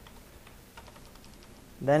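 Faint computer keyboard keystrokes, several quick key taps in a row about a second in, as text is deleted and retyped in a code editor.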